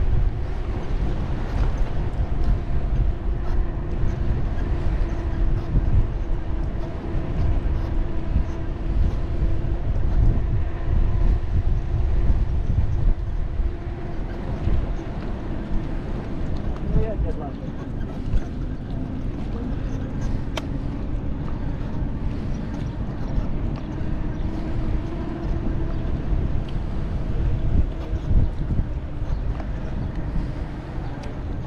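Wind buffeting the microphone of a camera on a moving bicycle, with a steady hum running underneath that drifts slightly in pitch.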